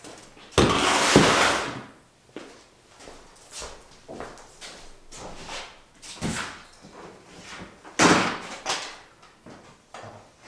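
Hard-shell rifle cases being moved and set down out of view. A loud scraping clatter lasts about a second near the start, scattered knocks follow, and a sharp bang comes about eight seconds in.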